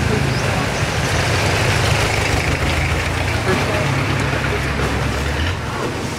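Boat engine running with a steady low drone under a rushing wash of noise and faint voices; the drone fades out about five and a half seconds in.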